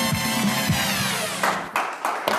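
TV quiz-show segment jingle over the round's title card: music whose tones slide downward, ending in a couple of sharp hits near the end.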